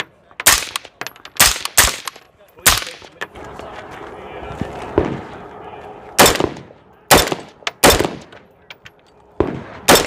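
Semi-automatic AR-15-style rifle firing single shots at an uneven pace, about eight in all: four in the first three seconds, then four more over the last four seconds. A stretch of steady crowd and wind noise fills the pause in the middle.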